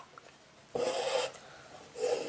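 Doubled embroidery thread being pulled up through cloth stretched in an embroidery hoop: a brief scratchy noise about three-quarters of a second in, with another pull starting near the end.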